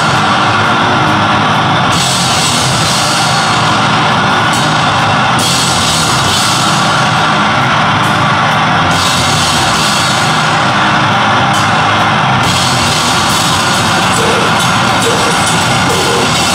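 Heavy band music played live and loud, with the drum kit driving it. Cymbal crashes wash in and out: they drop away for a moment near the start, around the middle and again before the end, then come back.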